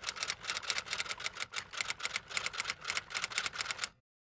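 Typewriter keys clacking in a rapid run, about eight keystrokes a second: a typing sound effect. It stops abruptly near the end.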